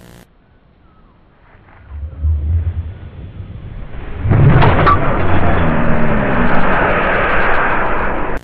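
Sound of a film clip played back from VHS tape: a low rumble starting about two seconds in, then from about four seconds a loud, steady hiss-like noise.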